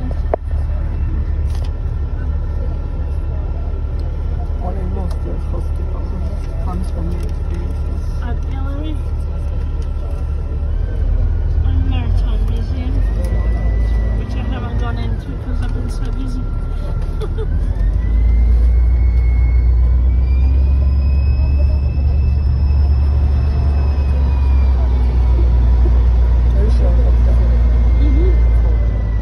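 Tour bus engine and drivetrain running under a heavy low rumble, with a thin whine that climbs in pitch as the bus pulls away and gathers speed, dips once, then rises higher and holds.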